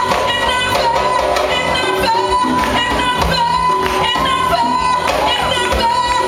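Live band music: a woman singing long held notes into a microphone over congas played by hand in a steady rhythm.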